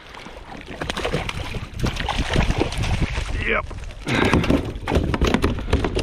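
Water splashing and irregular knocks and clatters as a hooked snapper is brought alongside a plastic kayak and landed in a net.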